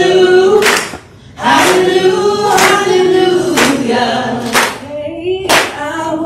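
Group of people singing together, with hand claps about once a second on the beat and a brief break in the singing about a second in.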